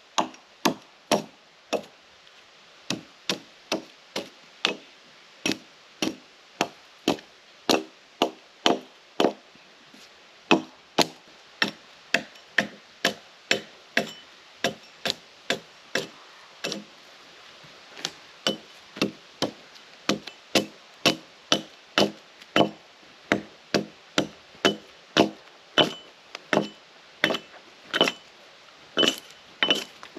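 Hatchet chopping along a cedar log to strip off its bark: a steady run of sharp chops, about three every two seconds, with a short pause about sixteen seconds in.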